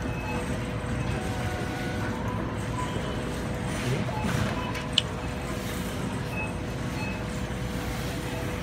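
Shop-floor ambience: a steady low rumble with a constant hum and faint background music. One sharp click about five seconds in.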